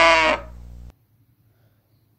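A cow mooing, the end of one long moo that stops about a third of a second in, with a fainter low tail until about a second in.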